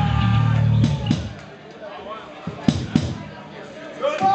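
A low amplified note from the band's guitar or bass rig is held and then cut off about a second in. It is followed by a handful of isolated drum strikes, heard as the drummer checks his kit between songs while the band deals with drum-trigger trouble.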